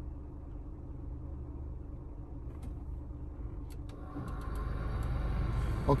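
Car engine idling, heard inside the cabin as a steady low hum, with a few faint clicks. About four seconds in, the background grows louder and brighter.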